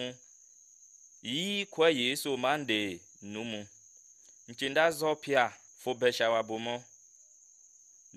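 A man's voice speaking in short phrases, with gaps between them, over a continuous thin high-pitched whine that holds steady throughout.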